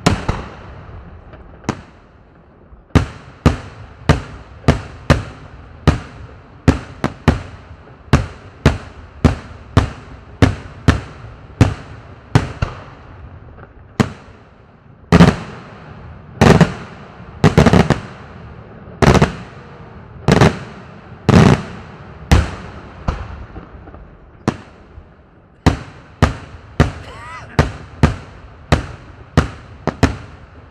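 Daylight fireworks: aerial shells bursting in a rapid series of sharp, loud bangs, about two a second, each with a short echoing tail. The loudest bangs come a little past the middle, and after a brief lull about three-quarters through the bangs start again.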